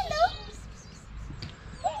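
A cat meowing once, a short call at the very start, followed by a person's high voice starting near the end.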